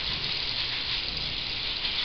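Tap water running steadily from a faucet into a sink, with a nail brush scrubbing the fingernails under the stream.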